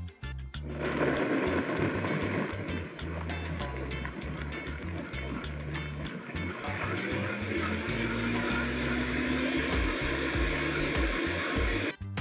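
Countertop blender running steadily, starting about a second in, liquefying roasted red peppers with half-and-half and water into a purée. Background music plays underneath.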